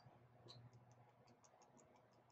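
Watercolour paint being spattered from a brush onto paper: faint, quick ticks, about six or seven a second, starting about half a second in.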